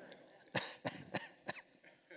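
A man's quiet, breathy chuckle: four short puffs of laughter about a third of a second apart.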